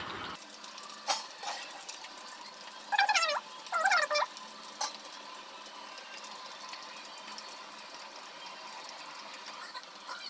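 Chicken pakodi deep-frying in hot oil in an iron kadai: a steady, even sizzle. Two short high-pitched calls come about three and four seconds in, with a couple of sharp clicks.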